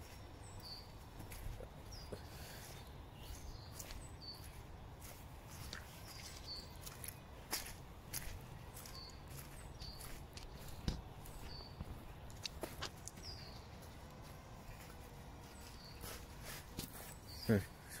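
Footsteps on dry leaf litter and twigs, heard as a string of irregular light clicks, while a small songbird repeats a short high call about every one to two seconds.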